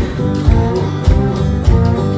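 A live blues band playing an instrumental passage: an acoustic guitar is strummed over drums keeping a steady beat, with a low thump about every 0.6 seconds.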